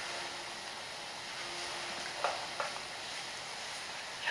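Steady low background hiss with a faint hum. Two brief soft sounds come a little after two seconds in.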